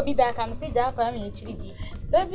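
A woman talking, her voice rising and falling sharply in pitch, over a music bed.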